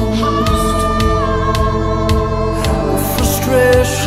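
1980s pop-rock song with singing: held vocal notes and choir-like backing voices over a steady bass and a drum beat of about two strokes a second.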